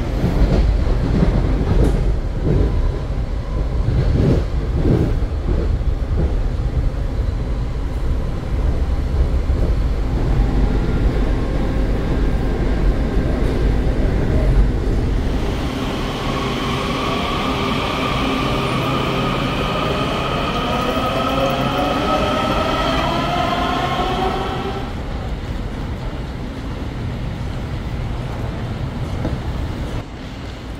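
Washington Metro train running: a loud rumble with clacks and knocks from the wheels for about half the time. Then a whine of several tones rises steadily in pitch as the train accelerates away, and it fades out near the end.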